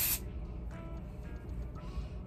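A short hiss of aerosol dry shampoo sprayed from a can, cutting off just after the start, followed by faint background music.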